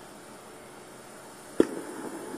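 A cassette tape player started with one sharp click about one and a half seconds in, after which the tape runs with a steady hiss from the player's speaker before the recording's voice comes in.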